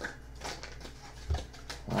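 Soft handling of tarot cards on a cloth-covered table: faint scattered clicks and rustles, with one short low thump about a second in.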